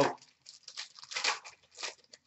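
An Upper Deck Stature hockey card pack being torn open by hand: a run of short papery rips and crinkles.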